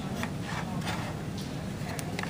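Light plastic clicks and rubbing as a Stryker compartment-pressure monitor and its saline syringe are handled and fitted together.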